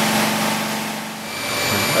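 Swimming-pool plant-room pumps running with a steady hum and rush. The sound fades a little about a second in, and is followed by a different machine hum carrying several high, thin whining tones.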